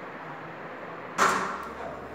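A single sharp bang or clatter about a second in, dying away over about half a second, against steady room noise.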